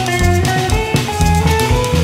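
Live rock band playing an instrumental passage: electric guitar picking a melodic line over bass guitar and a drum kit with a steady kick-drum beat.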